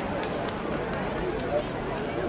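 Background chatter of people talking at a trackside, with no single dominant sound.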